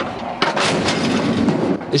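Heavy mounted gun firing, a dense and continuous run of loud reports that grows louder about half a second in.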